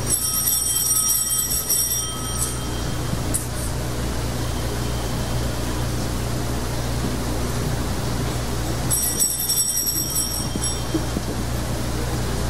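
Altar bells ringing at the elevation of the chalice during the consecration of the Mass. There are two bouts of bright, high ringing, one at the start and another about nine seconds in, over a steady low hum.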